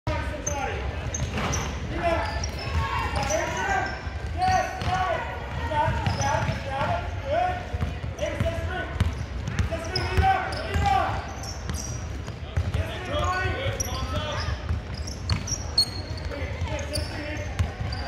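A basketball bouncing on a hardwood gym floor as it is dribbled, with indistinct voices of players and spectators carrying through the gym.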